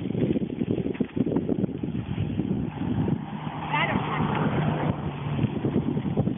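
Wind buffeting and rumbling on the microphone of a camera riding on a moving bicycle. A steady low hum joins in about halfway and fades near the end, with a brief chirp about four seconds in.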